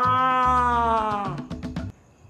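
Background music with a beat, carrying one long held note that sinks in pitch and fades about a second and a half in.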